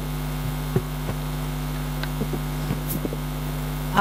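Steady electrical mains hum in the microphone and sound system, with a few faint scattered clicks.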